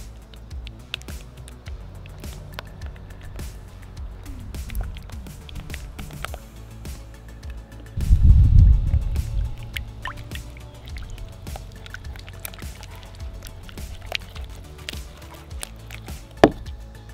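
Background music over the wet squishing and clicking of a spatula stirring Elmer's glue gel with liquid starch, the mix thickening into slime. A brief louder low rumble comes about halfway through.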